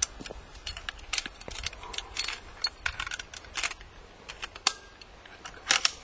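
Irregular metallic clicks and rattles of a hunting rifle's action being handled as it is unloaded, the cartridge taken out. The sharpest clicks come a little before five seconds in and again near the end.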